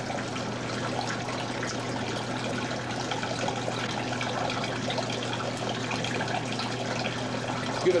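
Water trickling and splashing steadily down a small plaster model waterfall, with a steady low hum underneath.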